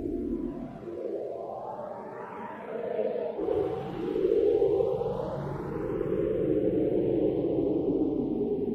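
Ambient musical intro: a sustained, echoing drone with a slow sweeping, swirling effect that rises and falls in pitch, growing louder about four seconds in.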